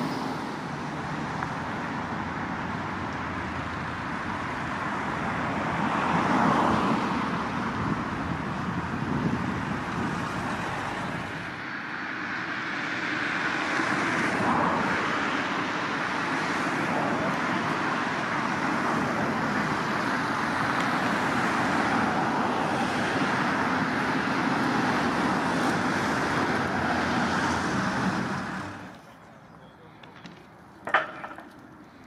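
Steady road traffic, with cars passing on a busy street and the sound swelling as vehicles go by. It drops away sharply near the end.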